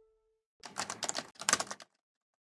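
The last held note of the outro music dies away, then a rapid clatter of clicks comes in two bursts of just over half a second each, ending abruptly.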